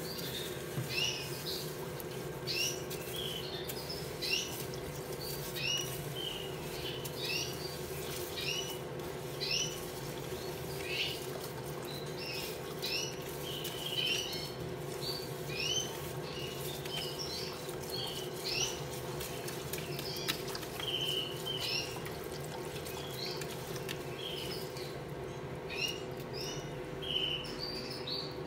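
Canaries chirping in short repeated calls, about one to two a second and thinning out near the end, over a steady low hum.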